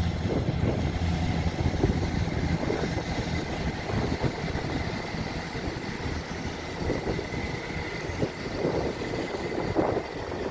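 Class 158 diesel multiple unit pulling out of the platform and drawing away. Its underfloor engines and wheels on the rails make a steady running rumble with a faint high whine.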